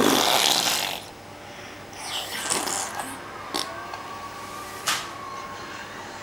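A person making a loud, noisy silly blowing noise, like snoring, for about a second. A softer, rougher noise follows about two seconds in, then two sharp clicks.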